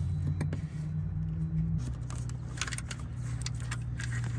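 A steady low engine hum runs under a scatter of sharp clicks and crackles as the electrical tape is pulled up from the wiring bundle and the wires are handled.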